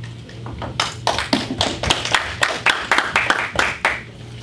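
A small group of people clapping. The applause starts about a second in and stops suddenly at the end.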